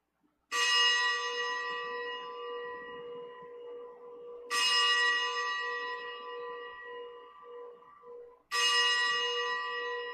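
A bell struck three times, about four seconds apart, each stroke ringing out and slowly fading: the consecration bell marking the elevation of the host at Mass.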